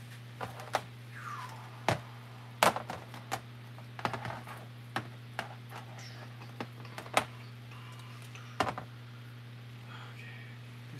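Hands handling small objects on a workbench: irregular clicks and light knocks, a few of them sharper, over a steady low hum.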